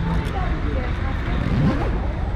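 Street ambience: scattered voices of passers-by over a steady low rumble of traffic.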